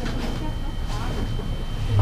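Steady low hum of room background noise, with faint rustles and light knocks as a rider shifts his weight on a motorcycle parked on a stand.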